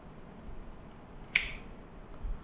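A single sharp mouse click about halfway through, over faint room hiss.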